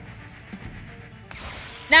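Faint background music from the animated fight's soundtrack, with a small click about half a second in. A voice starts right at the end.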